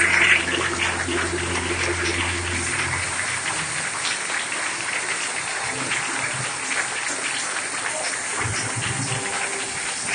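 The last sustained notes of the dance music stop about three seconds in, leaving a steady wash of many small claps: a congregation applauding at the end of the dance.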